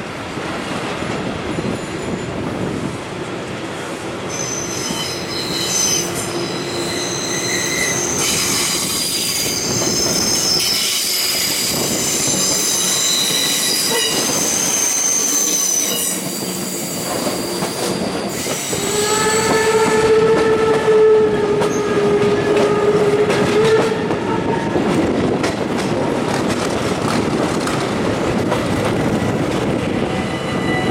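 Vintage passenger train rolling over the rails with a steady running noise, its wheels squealing in high, shifting tones for about twelve seconds from a few seconds in as it runs through curves and points. Past the middle the locomotive sounds one long steady note lasting about five seconds.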